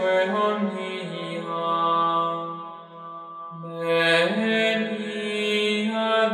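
Gregorian chant: a single melodic line of Latin plainsong sung slowly in held, stepping notes. It dips briefly just past halfway, then resumes on a higher note.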